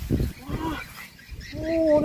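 A man's voice exclaiming in surprise, a drawn-out Thai "o-ho" near the end, after a few short vocal sounds.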